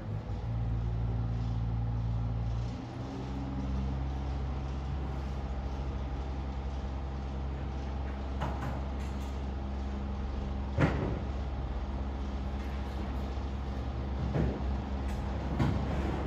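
A large engine running steadily with a low hum, its pitch dropping about three seconds in, with a few sharp knocks in the second half.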